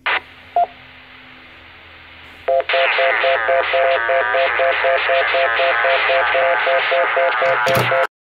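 Audio of a GMRS repeater from a Kenwood mobile radio's speaker: a short burst and a brief beep, a couple of seconds of open-channel hiss, then from about two and a half seconds in a loud, obnoxious busy tone that warbles quickly between two pitches with a voice under it. This busy tone is what the Chicago repeater puts out when a station keys it up with the conflicting 114.8 PL tone.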